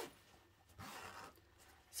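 Near silence, with a brief faint rustle about a second in as the fabric pouch and its zip are handled.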